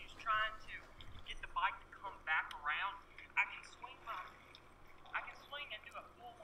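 Indistinct speech with a thin, telephone-like sound, its voices cut off above the mid-highs; no other sound stands out.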